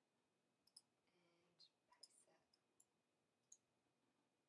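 Near silence with a few faint, irregular computer mouse clicks.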